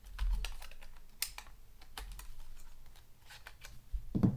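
Canon 350D DSLR body being handled: irregular small plastic clicks and light knocks around the battery compartment as the battery comes out, with a soft bump just after the start.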